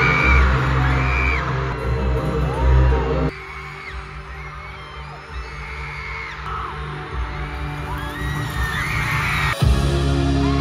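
Arena concert sound system playing a bass-heavy track, with fans screaming over it. About three seconds in the bass drops away, leaving mostly the crowd's high screams over quieter music, and it cuts back in suddenly near the end.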